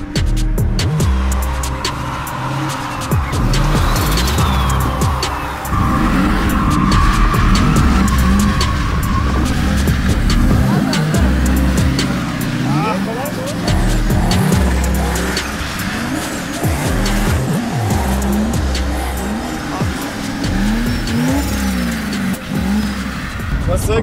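BMW E30 drift car's engine revving up and down and its tyres squealing as it slides in circles on wet asphalt.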